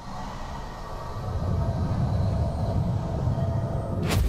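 A low, rumbling cinematic sound effect that swells over the first second or so and then holds steady, building tension.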